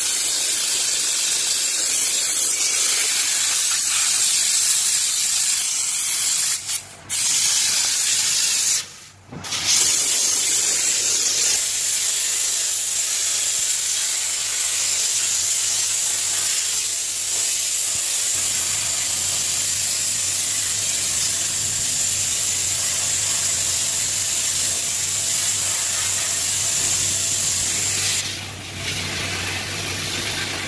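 Steam cleaner lance jetting steam in a loud, steady hiss, cut off briefly twice about seven and nine seconds in. A low hum sits underneath in the second half.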